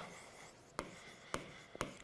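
Stylus writing on the glass of an interactive display board: a few faint taps and light scratches as the pen strokes out a word.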